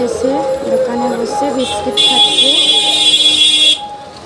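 Voices, then about halfway through a loud, high-pitched, buzzer-like electronic tone that holds steady for under two seconds and cuts off suddenly.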